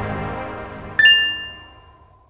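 Outro logo jingle: the tail of the music fades, then a single bright chime strikes about a second in and rings away.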